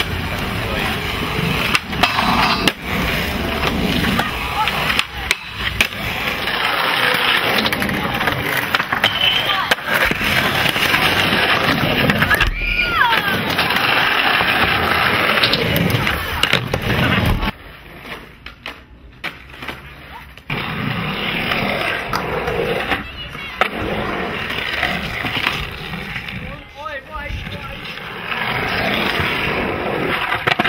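Skateboard wheels rolling on concrete and wooden ramps, with sharp clacks of boards popping and landing. The noise drops for a few seconds past the middle.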